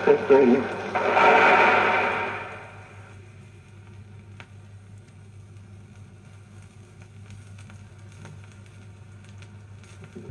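Vinyl record on a turntable at the end of a recorded speech: a brief burst of applause on the recording fades out within about two seconds. Then the groove plays on quietly with surface noise, scattered faint crackles and a steady low hum.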